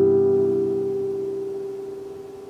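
The final strummed chord of a nylon-string classical guitar ringing out and steadily fading.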